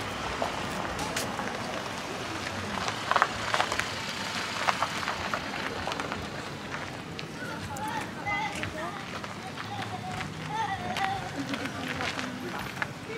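Outdoor street ambience: a steady background hum, nearby voices talking, loudest in the second half, and scattered footsteps or knocks on paving.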